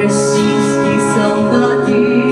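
A woman singing into a microphone over an instrumental accompaniment, amplified through the hall's sound system.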